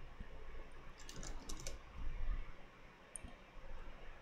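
Computer keyboard keys clicking faintly: a quick run of several keystrokes about a second in, then a single click near the end.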